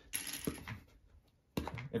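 Small plastic LEGO bricks clicking and clattering as a hand picks through a loose pile, a short burst of clicks lasting under a second.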